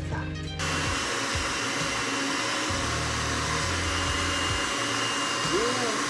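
Electric food processor running steadily, its blade chopping a wet mix of soaked chickpeas, onion, garlic and avocado; the motor starts about half a second in.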